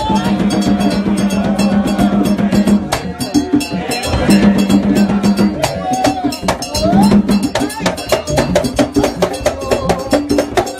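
Live gagá music: hand drums and other percussion played in a fast, dense rhythm, with a low steady tone held for stretches of a few seconds that breaks off and returns.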